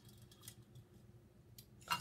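Faint small clicks and ticks of jelly beans being picked over in a plastic tray, with one sharper click near the end.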